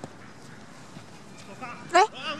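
A man's voice shouting during a soccer game, starting about a second and a half in and peaking in a loud call at the very end; before that only steady faint outdoor background noise.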